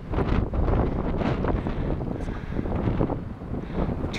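Wind buffeting the microphone, a gusty low rumble outdoors.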